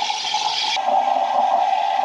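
Espresso machine steam wand steaming milk in a stainless steel pitcher: a loud, steady hiss. Just under a second in, its high, airy part cuts off abruptly, leaving a lower, duller steam noise.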